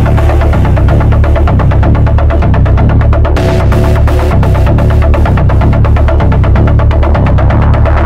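Techno from a DJ mix: a steady kick beat, about two beats a second, over heavy bass. Brighter hi-hat hits come in about three and a half seconds in.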